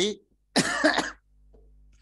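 A man coughing into a headset microphone: one short, harsh cough about half a second in.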